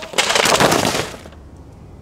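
Plastic file folders and loose papers scattering and clattering onto asphalt: a dense burst of rustling and slapping that lasts about a second.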